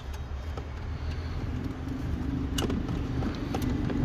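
A steady low hum with a few light clicks as a Pioneer car radio head unit and its wiring-harness plug are handled.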